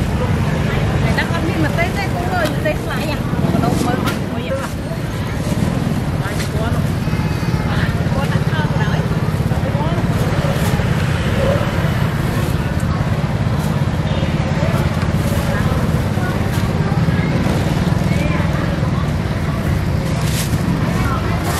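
Busy outdoor street-market ambience: a steady low rumble of street traffic under people talking nearby, with a few small clicks and rustles.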